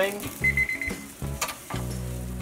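ThermoWorks ChefAlarm probe thermometer beeping, a quick run of high beeps about half a second in: the alarm signalling that the steak has reached its 115° target. A sharp click follows about a second later.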